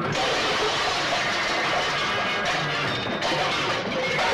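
A heap of aluminium cooking pots and vessels crashing and clattering non-stop as they are knocked down and scattered.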